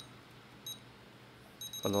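Futaba 14SG radio transmitter giving short high key beeps as its menu dial and keys are worked: single beeps at the start and under a second in, then a quick run of beeps near the end as the dial is turned through a menu.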